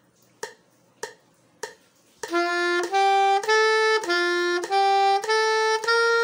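A metronome clicking about every 0.6 s, then about two seconds in a soprano saxophone comes in, playing a short up-and-down pattern of notes, one note per click, in time with the metronome.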